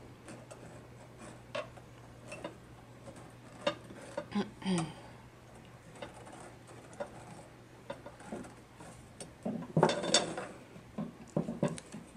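Hand weaving on a small tapestry loom: scattered light ticks and taps as a flat wooden stick and yarn are worked through the taut warp threads. There is a louder stretch of handling noise about ten seconds in.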